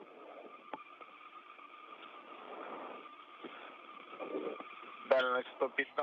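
Open radio channel hiss with faint steady tones on the space-to-ground communications loop. About five seconds in, a voice comes in over the radio.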